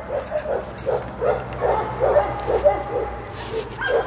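Dogs barking in a run of short, repeated barks, about two a second.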